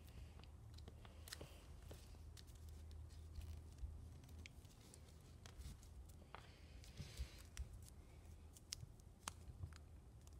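Faint rustling and crinkling of origami paper being folded and creased by hand, with scattered light clicks and a slightly fuller rustle about six to seven seconds in. A low steady hum sits underneath.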